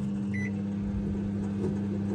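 LG microwave oven running with a steady electrical hum, just started. A short beep from its control panel comes about half a second in.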